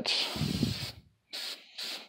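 Aerosol can of clear acrylic gloss sealer spraying onto painted foam armor in two bursts: about a second of spray, a brief pause, then a shorter burst. It is laying a protective clear coat over the paint.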